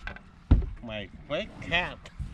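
A loud thump on the deck of a small aluminum fishing boat about half a second in, as a crappie is swung aboard, followed by a voice calling out several times with sweeping pitch.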